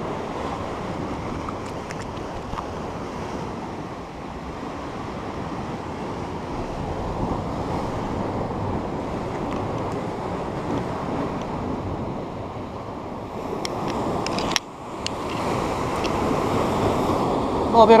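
Sea surf washing against a rocky shore, a steady rushing noise, broken by a sudden brief drop about fourteen and a half seconds in.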